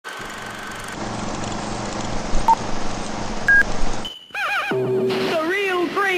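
Steady hiss with a low hum and two short beeps, then a brief silence just after four seconds. After that a high, warbling voice sings.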